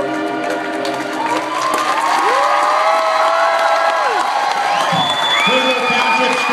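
A school concert band's final held chord, which fades out about a second in, followed by the audience applauding and cheering with long, high whoops.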